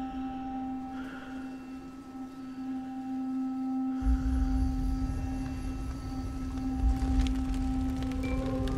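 Film trailer soundtrack: a steady sustained drone tone, joined about halfway through by a deep low rumble.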